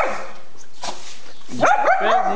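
Shih Tzu giving one sharp bark, then a run of high, arching yips and whines near the end: excited, as it is urged to do its trick.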